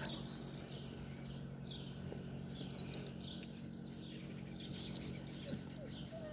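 Small birds chirping over and over in short, quick high calls, over a steady low hum. There is a soft knock at the start and another about three seconds in.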